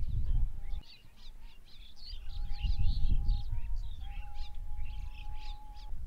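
Small birds chirping in quick, repeated calls, over a loud, uneven low rumble.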